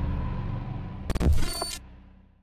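Cinematic logo-sting sound design: a deep rumbling drone, with a sharp whoosh-and-hit a little past a second in and a short, bright, glitchy burst right after it, then the sound dies away near the end.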